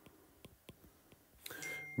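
Faint, light clicks and taps of a stylus on a tablet's glass screen while handwriting a formula.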